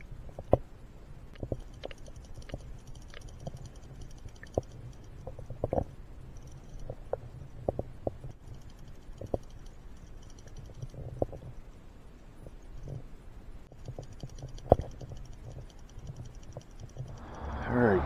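Muffled underwater sound picked up by a submerged camera in river current: a low rumble with scattered irregular clicks and knocks, and a sharper knock about half a second in and another about three-quarters of the way through.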